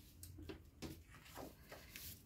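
Near silence: room hum with a few faint taps and rustles of cardstock sheets being handled on a tabletop.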